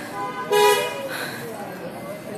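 A vehicle horn gives one short, steady honk of about half a second, starting about half a second in, over continuous background noise.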